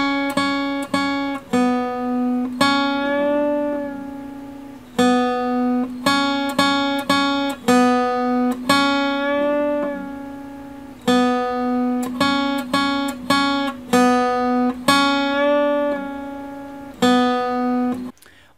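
Acoustic guitar playing a short phrase on the B string three times over: three picked notes at the second fret and one on the open string, then a picked second-fret note bent up a half step until it sounds like the third fret and released back down, ending on the open B.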